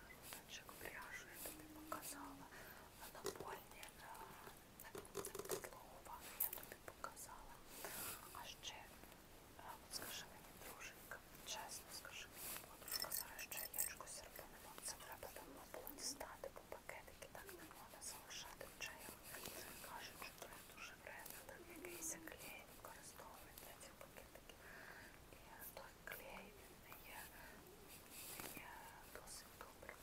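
A woman talking quietly in a whisper.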